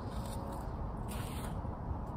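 Two brief scraping rustles about a second apart as a person shifts position in a standing yoga pose on snow, over a steady low rumble.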